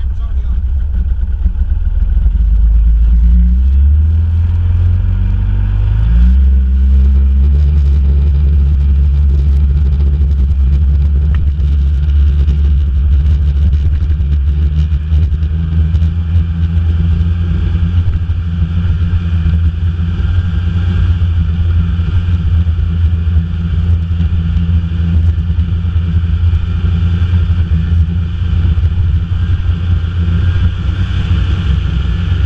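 Snowmobile engine running close to the microphone. Its note climbs in steps a few seconds in as the machine pulls away, then holds steady as it cruises along the trail.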